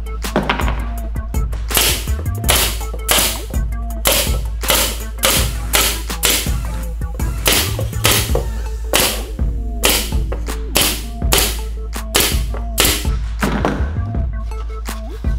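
Pneumatic nail gun firing nails one after another into plywood, a sharp crack about every half second, over background music.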